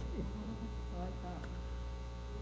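Steady low electrical mains hum, with a faint voice about a second in.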